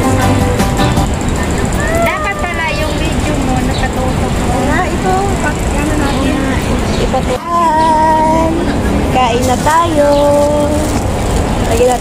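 People's voices, some notes held long like singing, over a steady low hum of city traffic.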